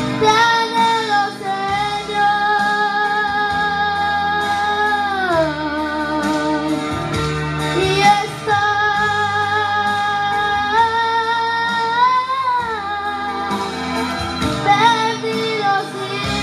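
A boy singing a slow Spanish worship song into a handheld microphone over instrumental accompaniment, holding long notes; his voice slides down about five seconds in and swells upward near twelve seconds.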